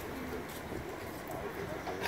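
Quiet outdoor background with faint distant voices and a soft, low call, with no distinct event.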